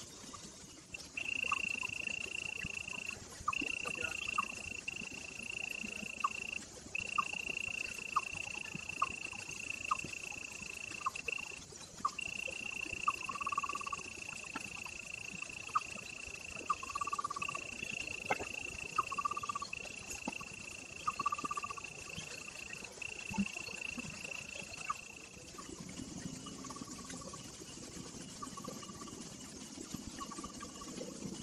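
A chorus of small calling animals: a high, thin, steady trill that runs in stretches of a few seconds with short breaks, and short lower chirps around it. The trill stops a few seconds before the end.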